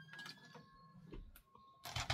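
Quiet handling of paper with a few faint clicks, then a sharp plastic knock near the end as a Fiskars paper trimmer is set down on a cutting mat.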